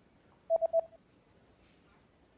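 Phone text-message alert: three quick beeps at one steady pitch, lasting about half a second.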